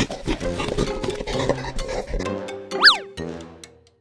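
Playful cartoon background music. Just under three seconds in, a sound effect glides sharply up in pitch and straight back down, then the music fades out.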